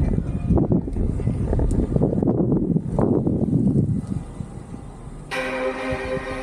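Low, unsteady rumble of wind buffeting a camera microphone carried along on a moving electric unicycle. It eases off about four seconds in, and music with sustained tones comes in near the end.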